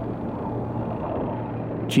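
A steady low rumble with an even haze of noise and no clear tune.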